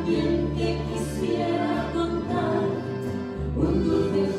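A small folk group playing live: voices singing together over acoustic guitars, bass guitar and accordion, with the accordion's held chords and a steady bass line underneath.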